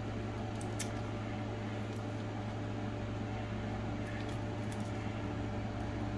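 Steady low hum of room background, with a few faint clicks and rustles of plastic film and washi tape being pressed down on a diamond painting canvas.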